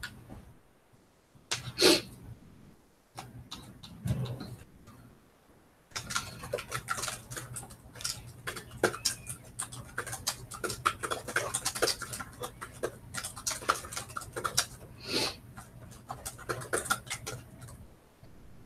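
Typing on laptop keyboards: quick, irregular key clicks, sparse at first and then dense and continuous from about six seconds in, over a low steady hum. A couple of louder short noises stand out, near two seconds and near fifteen seconds.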